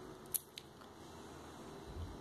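Faint room tone with one short sharp click about a third of a second in and a fainter tick shortly after, handling noise from the metal watch held in the fingers.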